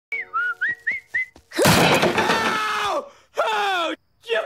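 Someone whistling in short rising notes, then about a second and a half in a loud crash of a chair striking a man. It runs straight into his long, falling cry of pain, and a second shorter cry follows near the end.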